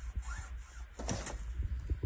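Heavy roof snow breaking loose and sliding off a metal roof: a short rushing hiss about a second in, followed by small scattered ticks as it goes over the edge.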